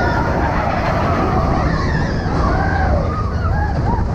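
Big Thunder Mountain Railroad mine-train roller coaster running along its track with a loud, steady rumble. Riders' yells and whoops rise over it, more of them in the second half.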